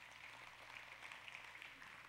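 Faint applause from a congregation: many hands clapping softly and steadily.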